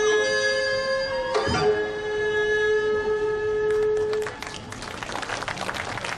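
Korean court-music (jeongak) ensemble holding its final notes, with one stroke of the janggu hourglass drum early on, the music stopping about four seconds in. Audience applause follows.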